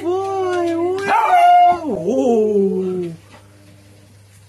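A small long-haired dog giving long, wavering howl-like whines that slide up and down in pitch, loudest a little after a second in, stopping about three seconds in.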